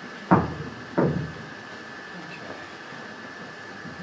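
Two sharp knocks or thumps, about two-thirds of a second apart, followed by steady room noise with a faint high hum.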